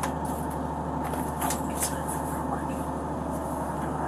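Steady low drone of an idling ambulance, heard from inside the patient compartment, with a couple of faint clicks about a second and a half in.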